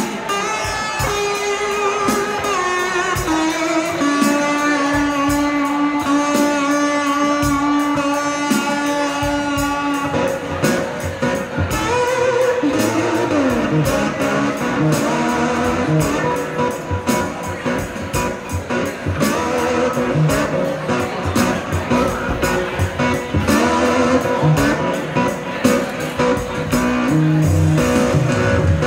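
Cigar box guitar playing instrumental blues. Held, ringing melody notes come first; from about ten seconds in, the playing turns busier, with notes sliding up and down in pitch.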